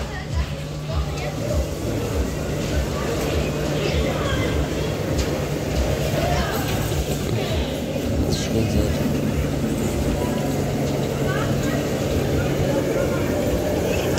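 Electric bumper cars running on the ride's floor: a steady low hum under a continuous rolling noise, with indistinct voices in the background.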